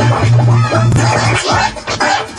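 Turntable scratching: a vinyl record is pushed back and forth by hand on the platter and cut in and out with the mixer's crossfader, giving quick sweeping chirps. A held low bass note underneath drops out about one and a half seconds in.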